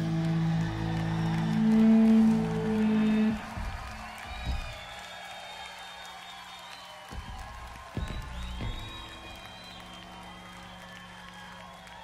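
Electric guitar and drums ending a live rock song: loud sustained guitar notes ring out and cut off about three seconds in. Then an audience cheers and whistles, with a few scattered low thumps and a steady low hum underneath.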